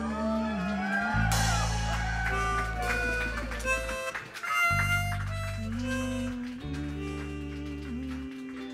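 Live band playing an instrumental passage led by a blues harmonica solo: bent, sliding notes in the first half, then held higher notes, over bass guitar, electric guitar and drums. The bass drops out briefly about halfway through.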